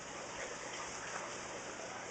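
Steady faint rush of running water from aquarium tanks and filters, with a low hum underneath.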